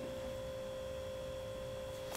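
Quiet room tone with a faint, steady tone held at one pitch and a low hum beneath it.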